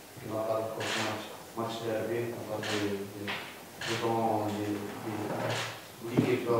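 Speech only: a man talking into a microphone in short phrases.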